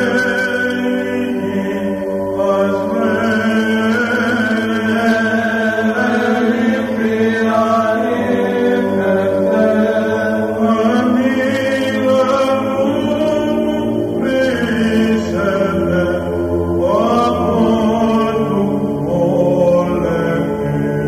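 Greek Orthodox Byzantine chant: voices sing a slow, ornamented hymn over a steady held low drone.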